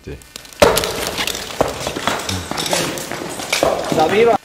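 Indistinct voices mixed with a string of sharp knocks and clatters, starting suddenly about half a second in.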